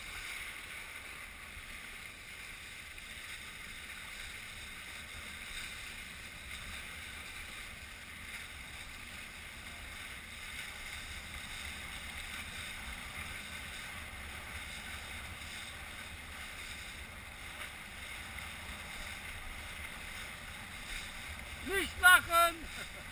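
Steady rush of wind and water while kitesurfing over choppy sea, with a low rumble of wind buffeting the camera. A short voice-like shout right at the end.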